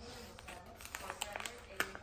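Faint crinkling and a few sharp clicks of a small plastic wrapper being picked and torn open by a child's fingers, the sharpest click near the end.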